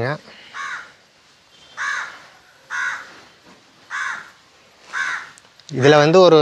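A crow cawing five times, short calls about a second apart.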